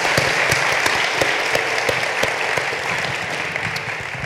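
Audience applause: many hands clapping at once, steady, easing off a little near the end.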